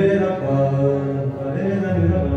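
Shabad kirtan: a man singing a drawn-out Gurbani melody in Punjabi over sustained harmonium chords.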